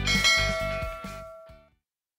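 A bell chime sound effect rings over the last beats of an intro jingle, holding steady tones that fade away within about a second and a half.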